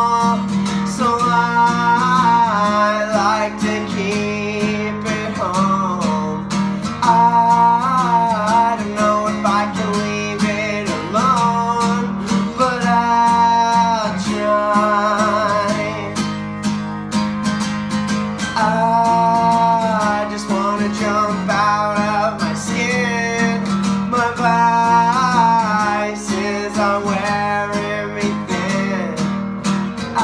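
A man singing over a strummed acoustic guitar, holding long notes on a slow, sad-toned song.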